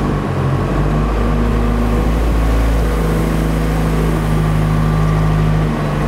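Diesel engine of a telehandler working hard at steady high revs, its pitch stepping up slightly early on and then holding, as it pushes up a heap of dried maize grain.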